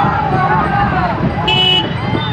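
People's voices with bending, calling pitch over background noise, and a short vehicle horn toot about one and a half seconds in.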